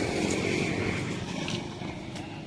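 A passing motor vehicle's engine, growing fainter over the two seconds.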